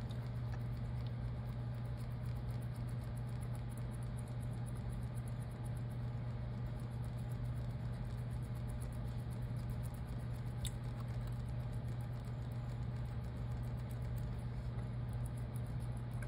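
A steady low hum underneath faint, fine scratching and ticking as a plastic spudger is wiggled under the adhesive of an iPhone 14 Pro's proximity-sensor flex. There is one small click near the middle.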